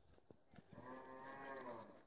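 A cow mooing once: a single faint, long call lasting a little over a second.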